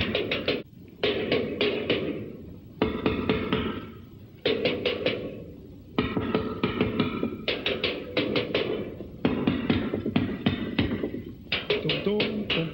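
Drum kit beaten with sticks: about six bursts of rapid strokes, each trailing off into ringing before the next flurry starts.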